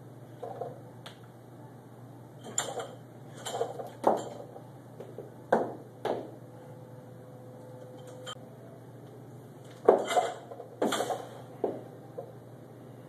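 Loaded barbell with bumper plates clanking and rattling as it is moved through clean-and-press reps: irregular sharp knocks in bunches, the loudest about ten seconds in, over a steady low hum.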